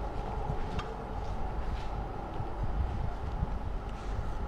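Steady low background rumble with a few faint soft ticks and rustles as gloved hands press and turn a wrapped burger bundle in a glass bowl of flour.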